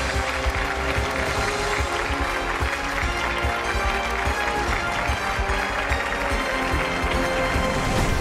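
Closing theme music of the game show with a steady beat, over applause from the studio audience.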